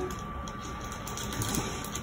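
Steady background hum and hiss with a faint, thin high tone running through it, and no distinct event.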